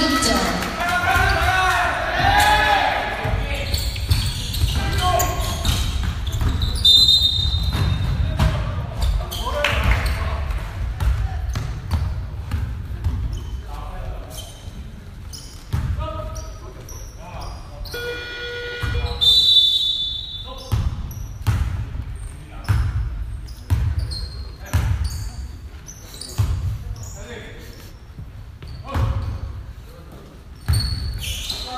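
Basketball bouncing on a gym floor during play, with many short sharp thuds echoing in a large hall, mixed with players' voices. A couple of short high squeaks, about seven seconds in and again near twenty seconds.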